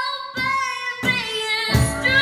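A young girl singing high, held notes live, accompanying herself on a steel-string acoustic guitar, with a guitar strum near the end.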